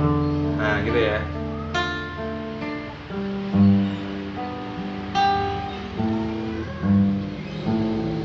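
Acoustic guitar being fingerpicked: plucked notes and chord tones ring out in a slow, easy arpeggio pattern, with a new note about every second.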